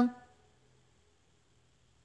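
Near silence: faint room tone, after a woman's voice trails off at the very start.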